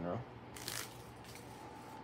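A brief rustle about half a second in, followed by a couple of fainter rustles, over a faint steady hum.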